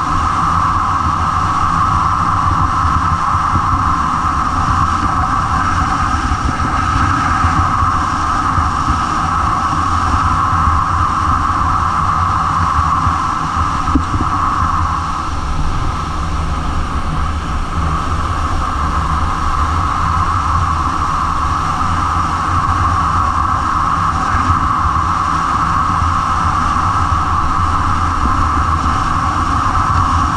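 Snowboard running fast over packed snow with wind rushing over a GoPro's microphone: a loud, steady rush and rumble.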